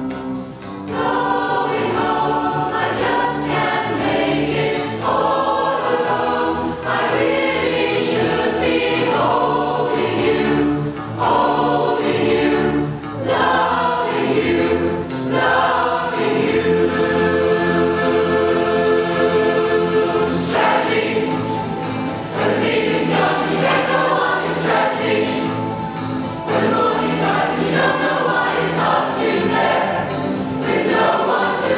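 Large mixed choir of men and women singing in harmony, in sung phrases with short breaks between them.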